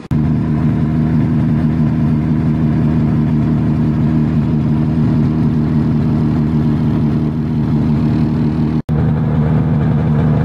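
Aktiv Panther snowmobile engine idling at a steady, unchanging pitch. The sound breaks off for an instant near the end.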